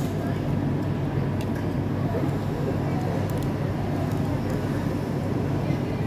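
Food court background din: a steady low hum with indistinct chatter from other diners, and a few faint clicks of cutlery against bowls.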